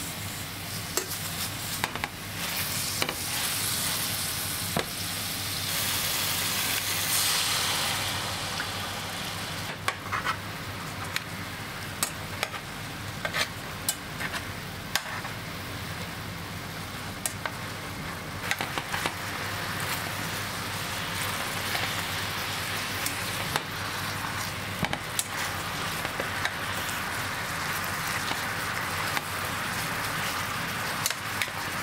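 Pork-wrapped vegetable rolls sizzling in oil in a frying pan, with metal tongs clicking against the pan as the rolls are turned. The sizzle swells louder for a few seconds early on, then settles to a steady hiss.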